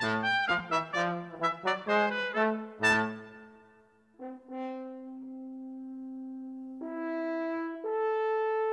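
Trombone and trumpet playing a quick duet of short, detached notes that ends about three seconds in. After a brief gap, a French horn enters with long held notes that step upward near the end.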